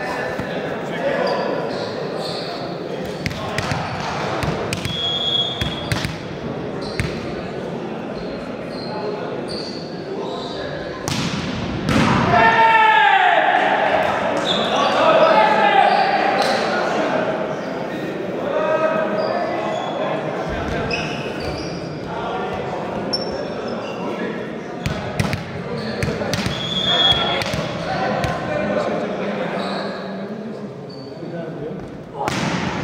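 Voices calling and shouting in an echoing sports hall during a break between volleyball rallies, with scattered sharp knocks of a volleyball bouncing on the floor. The shouting is loudest around the middle.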